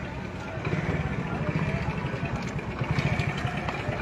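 A vehicle engine idling close by, a low rapid throbbing that grows a little louder about half a second in, with faint voices in the background.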